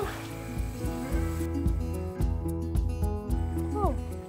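Background music: held notes changing in steps over a pulsing bass.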